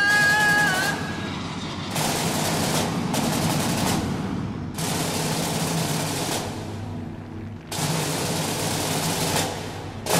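Film soundtrack: a high, wailing voice fades out about a second in. It is followed by a dense, crackling rush of noise in several stretches, each broken off abruptly, over a low sustained drone.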